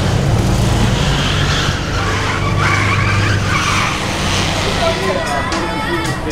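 A car engine running close by with a steady low hum, amid street traffic and voices; music begins to come in near the end.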